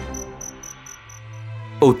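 Cricket chirping as a night-time sound effect: an even, high-pitched pulse about six or seven times a second that fades out about a second and a half in. It sits over soft background music.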